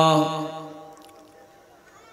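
A man's chanting voice holds one long steady note that ends about half a second in and dies away in echo. A quiet pause follows.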